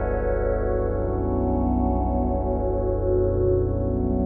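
A sustained chord of many steady tones over a low, rapidly pulsing drone, played through a frequency-shifter plugin with its shifter feedback turned up.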